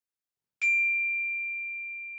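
A single high-pitched chime struck about half a second in, ringing on as one clear tone and slowly fading.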